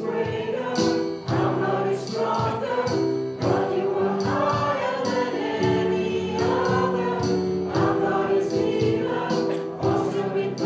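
A congregation singing a hymn together with a live worship band: many voices over held chords and a steady drum beat.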